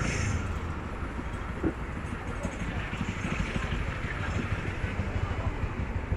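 City street traffic noise: vehicles running past in the road, with faint voices of people on the sidewalk.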